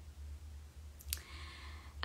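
A quiet pause over a low steady hum, broken about a second in by two short sharp clicks close together.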